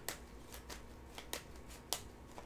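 A tarot deck being shuffled by hand: a few faint, irregular card flicks and snaps.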